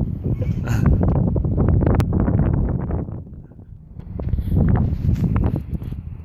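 Wind buffeting the microphone, a heavy low rumble that eases briefly about three and a half seconds in, with a single sharp click about two seconds in.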